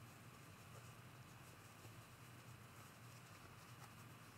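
Near silence: room tone with a steady low hum and faint rustling of cotton fabric being handled and poked into shape.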